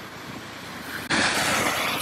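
Sea surf washing on the beach: a low wash at first, then a louder rush of surf setting in about a second in.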